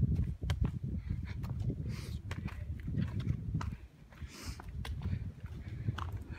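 Footsteps on a muddy, leaf-littered trail, with short crunches and clicks at an irregular pace over a low, uneven rumble on the microphone.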